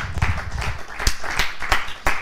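Audience applauding, with many hand claps overlapping irregularly.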